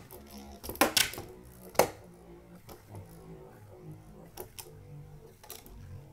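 A Beyblade (Dragoon MSUV on a flat rubber running core) spinning fast on a plastic stadium floor: a low steady whir broken by sharp clicks several times as the top skids and knocks around the bowl.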